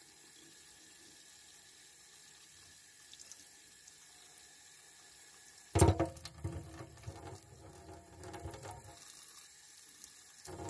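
Tap water splashing onto a small piece of ceramic diesel particulate filter held in tongs in a sink, back-flushing loosened ash out of its channels. It is faint and steady at first, then about six seconds in it turns suddenly louder and uneven.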